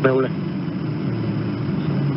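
Steady low hum with a faint hiss under it, from the soundtrack of aerial strike footage. A voice on the radio speaks a brief syllable at the very start.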